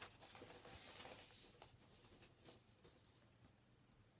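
Faint rustling and scraping of paper and card as a vinyl LP and its sleeve are handled, dying away about three seconds in.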